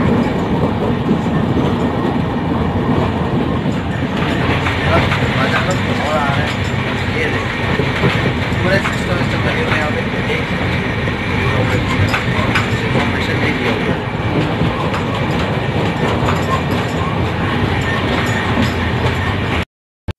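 A moving passenger train heard from inside the coach: a steady rumble with the clatter of wheels on rail joints, with voices mixed in. It cuts off suddenly just before the end.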